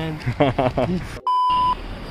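A single electronic beep: one steady pure tone held for about half a second, starting just after a sudden dropout to silence.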